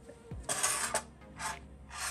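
Socket ratchet clicking in two short bursts, about half a second in and again near the end, as valve cover bolts are worked.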